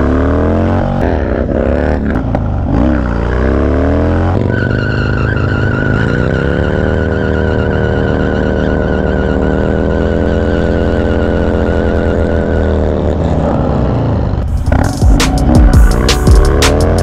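Harley-Davidson Dyna V-twin engine heard from on the bike, revving up and down several times, then pulling up in pitch and holding a steady speed. About a second and a half before the end, music with a beat comes in.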